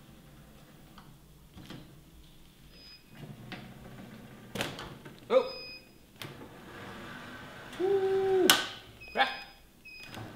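Metal hive lifter being worked by hand: a run of clicks and clanks from its frame and lifting mechanism, louder in the second half. Short vocal noises come in among them, a brief rising one about five seconds in and a held grunt near eight seconds.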